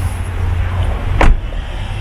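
A steady low rumble of outdoor noise, with one sharp knock about a second in.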